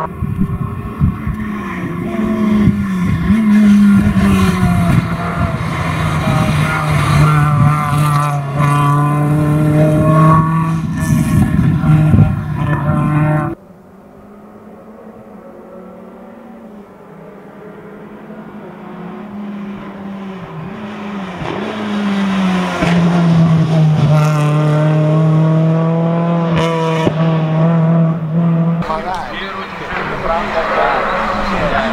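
Renault Clio hillclimb car's four-cylinder petrol engine at full throttle, loud and close, with dips in pitch at gear changes in the first few seconds, then holding high revs. About 13 seconds in it cuts off suddenly. The engine is then heard far off and grows steadily louder as the car approaches at high, steady revs.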